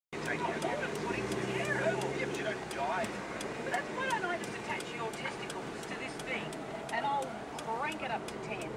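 A voice talking, plausibly from the car radio, heard inside a moving car's cabin over a low engine and road hum, with a fast, even ticking throughout.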